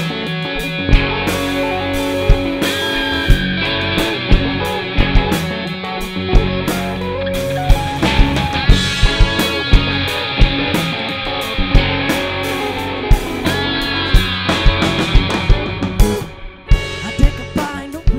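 Live rock band playing an instrumental passage: electric guitars over a drum kit, taken straight from the mixing desk. Near the end it briefly drops back before the drums hit in again.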